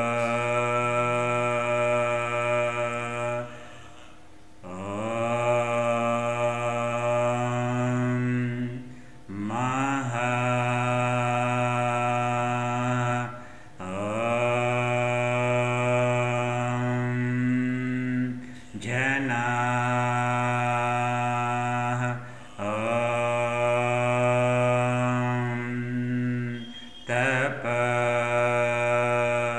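A man's voice chanting a mantra in long, held tones on one steady pitch. Each tone lasts about four seconds and begins with a short upward slide. The tones are separated by brief breaths, about seven in all.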